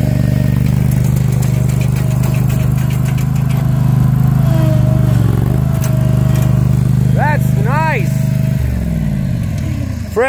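Small engine of a verticutting machine running steadily. Near the end its pitch falls as it slows down.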